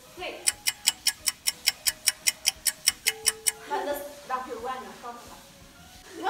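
Rapid, even ticking, about five ticks a second for roughly three seconds, followed by voices.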